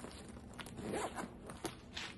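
Zipper on a small fabric cosmetic pouch being pulled, in a few short strokes.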